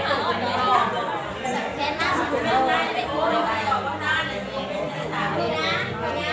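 Many people talking at once, adults' and children's voices overlapping in a crowded room.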